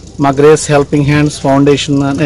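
Speech only: a man speaking Telugu.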